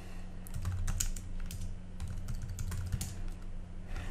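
Typing on a computer keyboard: a run of irregular keystrokes entering a username and password at a terminal prompt, over a steady low hum.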